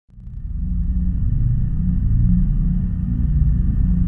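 A loud, deep, steady rumble that fades in over the first half second.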